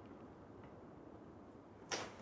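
Quiet room tone, with one brief swish near the end.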